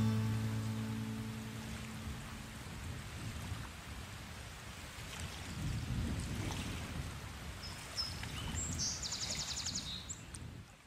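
The last strummed acoustic guitar chord of a song dying away, leaving outdoor background noise with a low rumble. A brief high buzzing sound comes near the end.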